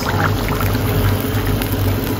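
Steady roar of a gas stove burner under a wok of simmering curry, with a constant low hum.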